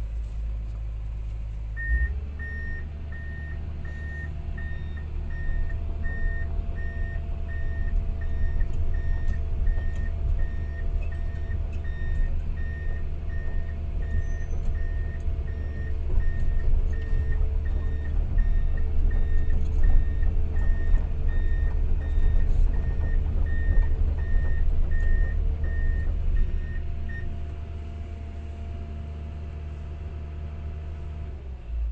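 Komatsu PC200 excavator's diesel engine running, heard inside the cab, picking up about two seconds in as a steady series of travel-alarm beeps starts and runs until near the end while the machine tracks.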